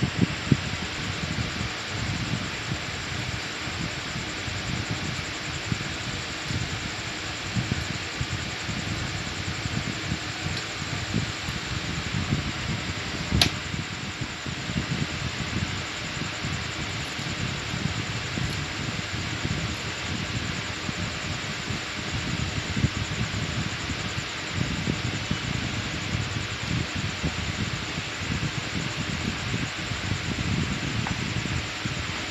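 Steady background noise with a low, uneven rumble, over which cauliflower florets are cut on a boti blade, giving faint snaps and one sharp click about halfway through.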